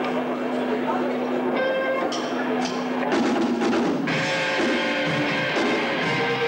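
Live rock band of electric guitars, bass guitar and drum kit starting a song. A held note and a few drum hits come first, then the full band comes in about three seconds in.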